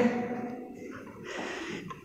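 A man's audible breath, a short noisy intake about a second and a half in, after the fading echo of his voice at the start.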